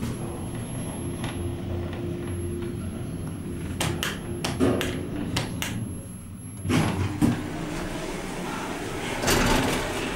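1988 KONE traction elevator heard from inside the car: a steady low hum, a run of clicks about four to six seconds in, two knocks about seven seconds in, and the car doors starting to slide open near the end.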